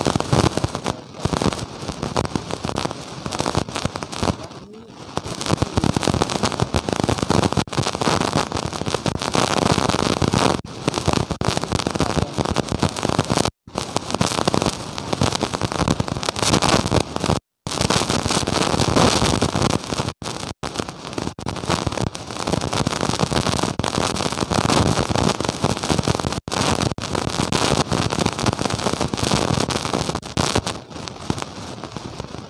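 Loud, continuous crackling noise from a faulty, distorted audio signal that buries a man's speaking voice. The sound cuts out to silence for an instant several times, twice near the middle.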